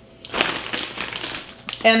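Plastic bag of shredded coconut crinkling and rustling as flakes are pinched out and sprinkled, with a short click near the end.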